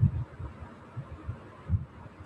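Pencil drawing on paper laid on a desk, heard as a few irregular dull low thumps, the first the loudest, over a faint hiss.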